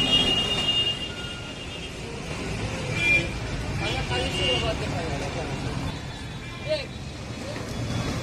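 Busy street ambience: a steady rumble of road traffic with indistinct voices talking in the background.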